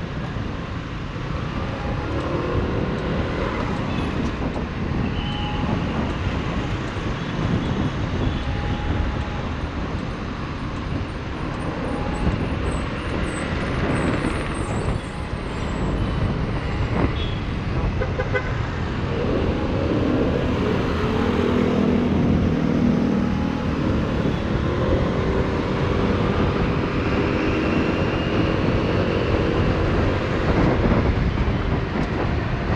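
Kymco Like 125 scooter riding through city traffic: its single-cylinder engine running steadily under a continuous rush of road and wind noise, getting slightly louder in the second half. A steady pitched hum joins about twenty seconds in.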